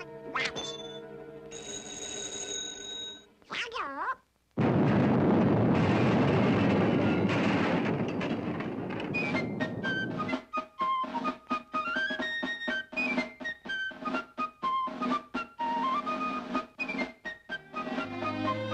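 Cartoon soundtrack: a telephone bell rings for a couple of seconds. After a brief hush comes a long, loud crash lasting about five seconds. Orchestral music of quick, short notes stepping up and down follows.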